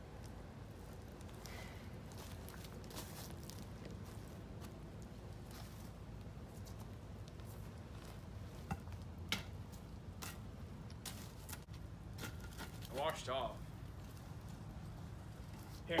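Wood fire in a backyard fire pit giving scattered sharp pops and crackles over a steady low rumble, the pops thickest in the seconds before a short spoken word near the end.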